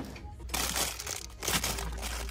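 Rustling and crinkling of goods being handled and rummaged through on a shop shelf, in two bursts, with a sharp knock right at the start.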